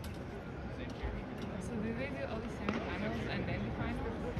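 Indistinct voices and background chatter of people in a large venue, with a few faint knocks.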